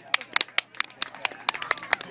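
Applause from a small audience: a few people clapping, about five claps a second, sharp and uneven.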